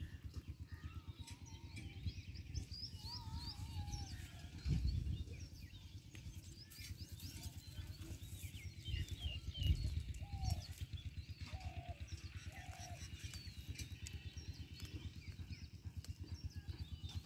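Small birds chirping and calling on and off, over a steady low, fast throbbing noise.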